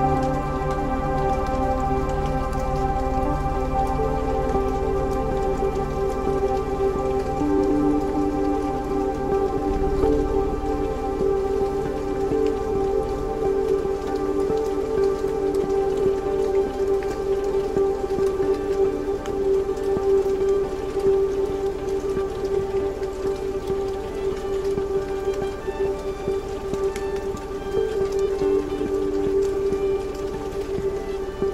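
Ambient electronic music: held drone notes, with some changing every few seconds, over a dense crackling texture like rain.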